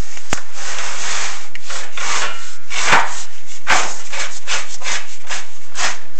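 Chimney inspection camera and its brush guide scraping and rubbing along the inside of a heavily sooted metal stove flue as it is lowered. The sound is a run of uneven scrapes, quickening to two or three a second in the second half, with a sharp click just after the start and another near the end.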